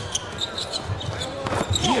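A basketball being dribbled on the hardwood court in a few short bounces, over the steady noise of the arena crowd.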